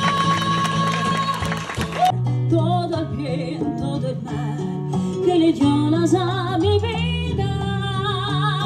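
Music with a woman singing into a microphone. About two seconds in, a denser passage cuts off abruptly, and she sings on with strong vibrato over held low accompaniment notes.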